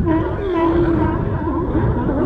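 Sea lions hauled out on a dock, calling in a chorus of overlapping barks and drawn-out calls, one held for most of a second about half a second in.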